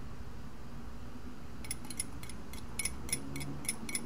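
Light, high clinks of small glass tumblers, a few a second in an uneven run, starting a couple of seconds in over a faint steady background hum.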